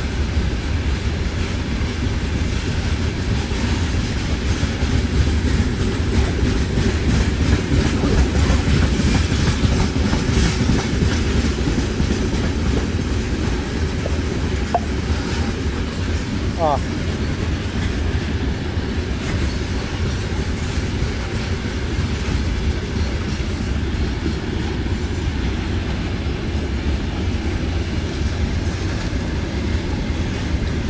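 Freight train of open gondola wagons passing at a steady speed: a continuous low rumble of wagon wheels running on the rails.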